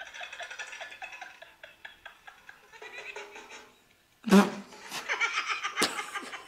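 Faint sound of a video clip playing from a phone, then a sudden burst of laughter about four seconds in, with choppy giggling laughter after it.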